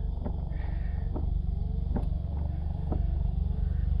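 Suzuki Cappuccino's 657cc three-cylinder engine idling steadily, freshly started and not yet warmed up, with faint clicks about once a second as the windscreen wipers sweep.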